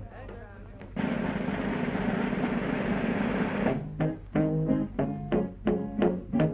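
Cartoon soundtrack: quiet music, cut by a sudden loud rush of noise about a second in that lasts a couple of seconds. Then the orchestra comes back with short, clipped notes, about three a second.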